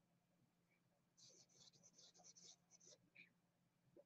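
Near silence, with faint rapid scratching of writing or drawing for about two seconds in the middle.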